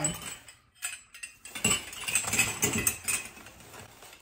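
Brass candlesticks clinking and knocking together as they are handled, a run of small metallic clicks and rattles.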